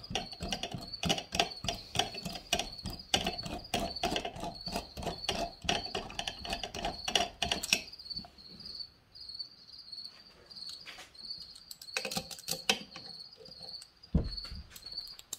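A quick run of small metallic clicks for about eight seconds as a hand driver turns the crankcase bolts on a chainsaw engine block, then a few light knocks. A high, pulsing chirp goes on steadily underneath.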